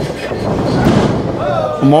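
Loud, uneven rumble from the wrestling ring as wrestlers run across the canvas-covered boards, with a commentator's voice starting near the end.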